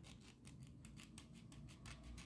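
Faint, quick scraping strokes of a small file on the metal end cap of an 18650 lithium-ion cell. The terminal is being roughened so that solder will take.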